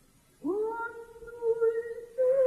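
A woman's voice sings one soft held note, sliding up into it about half a second in after a near-silent pause.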